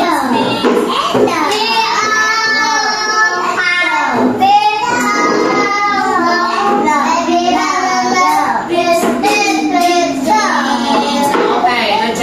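Young children singing a song together in a classroom, the sung notes held and gliding without a break.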